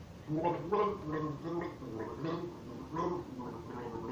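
A man gargling a mouthful of water while voicing a song's melody through it, the bubbling gurgle carrying a string of changing sung notes.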